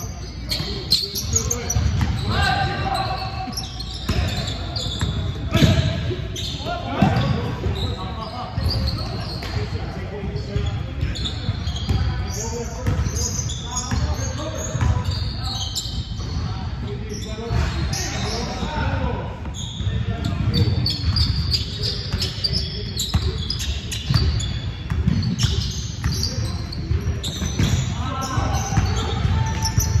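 Basketball game play: a ball bouncing on a hardwood gym court, with players' indistinct calls and shouts, all echoing in a large gym.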